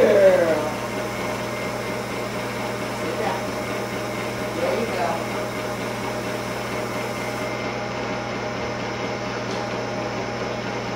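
Underwater treadmill running: a steady mechanical hum of its motor and water pump with several fixed tones, unchanging throughout, with faint voices in the room now and then.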